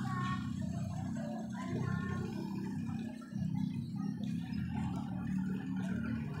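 Indistinct background voices with faint music, held at a steady moderate level with no distinct event.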